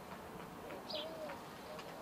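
Bird calling against quiet outdoor background noise: one short, high call about a second in, with a faint, lower drawn-out note around it.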